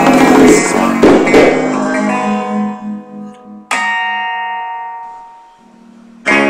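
Guitar music: strummed chords for the first couple of seconds that then die away, and a little past halfway a single chord struck and left to ring out, fading slowly.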